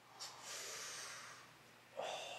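A man breathing out hard through his nose: a short puff, then a breathy exhale lasting about a second, in reaction to a bold prediction.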